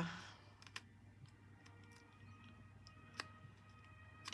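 Near silence with a few faint light clicks, the clearest about three seconds in, from a small plastic ink pad being handled and dabbed against a paper label's edges.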